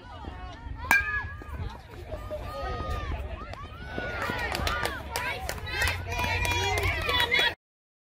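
A single sharp crack of a bat hitting a baseball about a second in, followed by spectators shouting and cheering as the ball is put in play, the voices growing louder until the sound cuts off suddenly near the end.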